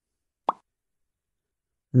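Near silence, broken once about half a second in by a very short, soft mouth pop.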